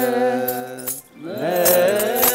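Ethiopian Orthodox clergy chanting in unison on a long held note. The chant breaks off just after a second in and the voices slide back up into the note, with short metallic jingles over it.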